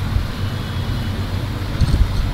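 Steady low background rumble with no speech over it.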